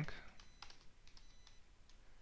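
Computer keyboard being typed on: a few faint, separate keystrokes.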